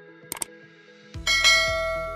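A bell-like chime struck about a second in, ringing and slowly fading, over soft background music. A short click comes just before it.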